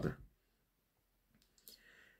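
A man's voice finishing a word, then a pause with only a faint mouth noise shortly before he speaks again.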